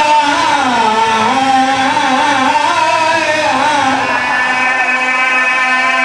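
A man's voice chanting a drawn-out, melodic recitation through a loudspeaker system, with long held notes that slide up and down in pitch: a majlis orator (zakir) reciting in a sung style.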